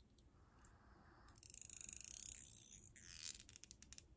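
Pink plastic comb drawn through hair and over the scalp close to the microphone: a high, rasping run of rapid ticks from the comb's teeth, starting about a second in and lasting under two seconds, then a second shorter stroke.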